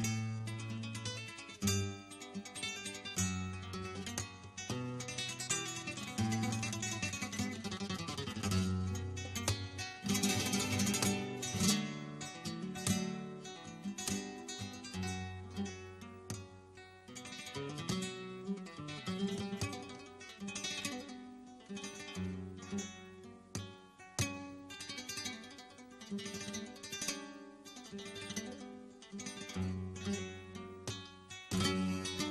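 Solo flamenco guitar played live, with picked melodic runs and strummed chords in a free-flowing rhythm. About ten seconds in comes a dense flurry of fast strokes, the loudest passage.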